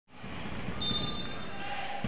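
Gym sound of a basketball game: a ball being dribbled on the hardwood court, with a thin steady high tone about a second in.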